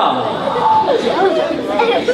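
A man's voice vocalizing expressively with no clear words, including one briefly held tone about a third of the way in.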